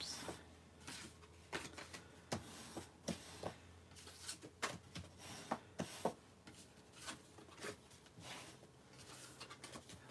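Bone folder rubbing along the folds of cardstock to crease them, with soft paper rustles and scattered small taps as the folded cards are pressed and moved about. Faint throughout.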